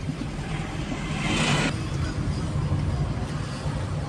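Steady low rumble of a car's engine and tyres heard from inside the cabin while driving, with a brief rush of hissing noise about a second in.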